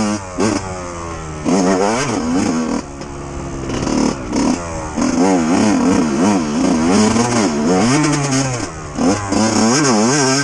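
Yamaha YZ125's 125 cc single-cylinder two-stroke engine revving up and down over and over as the throttle is worked. It drops off briefly twice, just after the start and around three seconds in, as the throttle is rolled off, then climbs again.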